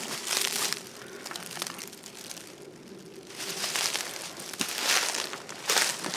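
Footsteps crunching through dry fallen leaves on a forest floor, an uneven run of steps with a quieter lull about midway.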